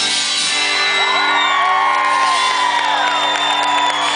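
A live country band holding its final chord as the song ends, with the audience whooping and cheering over it.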